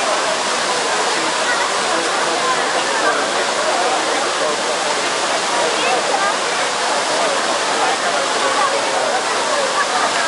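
Trevi Fountain's water cascading into its basin: a steady rushing of falling water, with a crowd of people talking.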